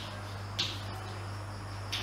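Chalk writing on a chalkboard: short, high-pitched scratchy strokes, one about half a second in and another near the end, over a steady low hum.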